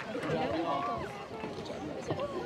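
Indistinct, low-level talking from people gathered near an open microphone, with no clear words.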